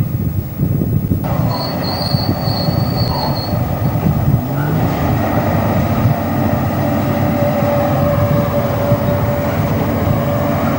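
Rail-recovery train and its rail-lifting gear at work, ripping rails from the sleepers and dragging them aboard: a steady low machinery rumble with metal squealing. A high thin squeal runs briefly, starting just after the sound changes abruptly about a second in, and a lower steady squeal runs through the second half.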